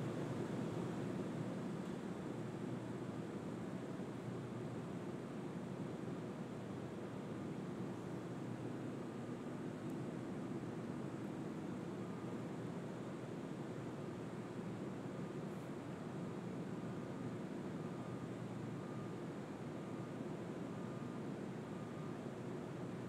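Steady, faint rushing noise with no speech, even throughout.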